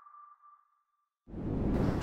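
The last note of an intro jingle ringing out as one thin tone that fades away, then silence; about one and a half seconds in, steady room noise fades in.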